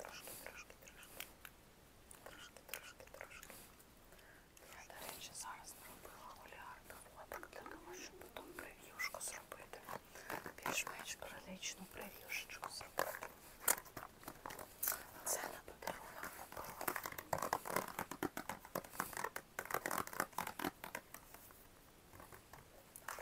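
Soft whispering in a small room, broken by many short scratchy clicks and taps from handling, which grow denser and louder in the second half.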